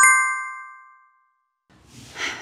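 A single bright chime sound effect, struck once right at the start, its several bell-like tones ringing out and fading away over about a second.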